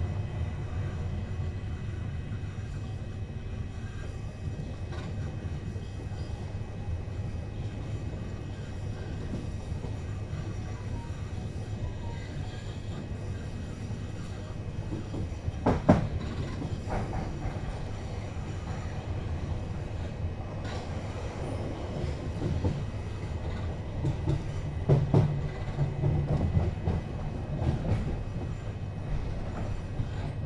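Class 376 Electrostar electric multiple unit running along, heard from inside the passenger saloon: a steady low rumble of wheels on rail. A sharp knock comes about halfway through, and a run of clacks follows in the last third.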